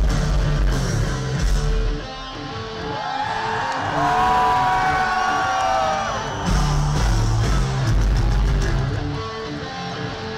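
Live heavy metal band heard from within the crowd: drums, bass and electric guitars play together, then about two seconds in the low end drops back and a lead electric guitar holds notes that bend in pitch. The full band comes back in after about six and a half seconds.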